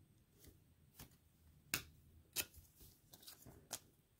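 Faint, short clicks and taps of trading cards being handled, about five scattered over a few seconds.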